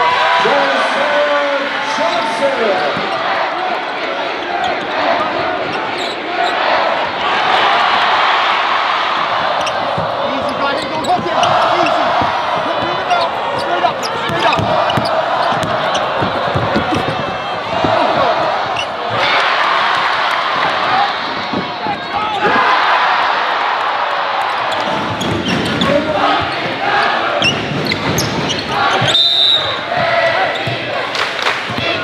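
Game sound from a basketball game in a gym: a basketball bouncing on the hardwood court again and again, over a steady background of crowd and player voices.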